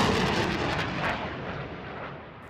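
Rocket fired from an M142 HIMARS launcher: the rocket motor's rushing noise fades steadily as the rocket flies away.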